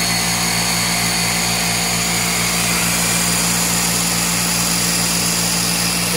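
Compressed-air Tesla turbine running steadily at speed, driving two brushless generators through 3.6:1 gears: a constant low hum from the generators with a steady high whine from the gears and bearings.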